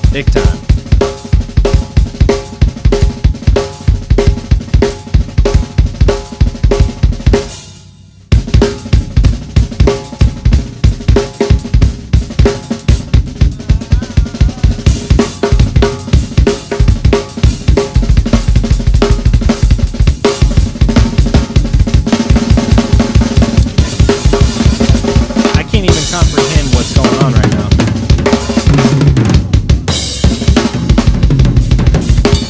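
Drum kit solo played at high speed: rapid snare, tom and bass-drum strokes mixed with cymbal crashes. There is a brief stop about eight seconds in, then the playing picks up again, with more cymbal wash in the second half.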